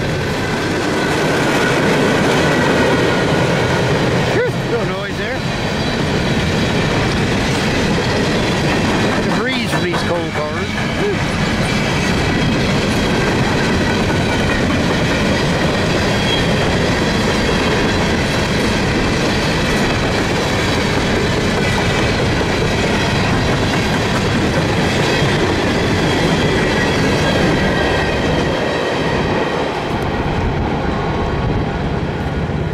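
Empty CSX coal hopper cars rolling past at speed: steel wheels clattering over the rail joints and the empty cars rattling, as one steady, loud din.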